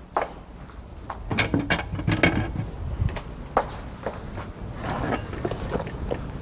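Kitchenware being handled on a counter: a scatter of light knocks, clinks and clunks as bowls and utensils are moved and set down, over a low steady background rumble.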